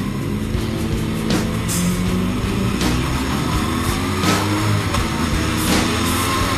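Yamaha R1 inline-four engine running as the bike rides at low speed, with a whine that climbs slowly in pitch through the second half as it pulls away.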